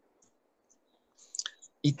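Near silence broken by a few faint, short clicks, with a small cluster of them a little over a second in; a voice starts speaking Russian just before the end.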